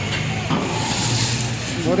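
Busy outdoor market background: voices in the background over a steady low engine hum.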